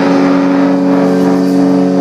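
Live rock band holding one sustained electric guitar chord that rings steadily with no drums, before drum hits come back in just after.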